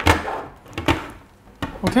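Small plastic clicks and knocks from multimeter test probes being handled and set against a screw-terminal block: one at the start, another about a second in, and a few more just before a spoken 'Okay'.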